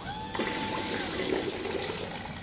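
Magnetic drive pump of a two-head liquid filling machine running, with liquid rushing through its tubing. There is a click about a third of a second in, and a steady whine that lasts about a second.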